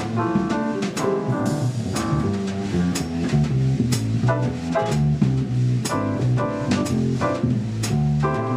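Live jazz combo playing: a drum kit with regular cymbal strokes, a double bass moving note to note underneath, and chords above.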